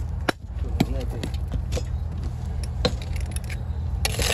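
Building-site background: a steady low rumble with a few sharp knocks, about a third of a second in and again near the end, and a faint distant voice.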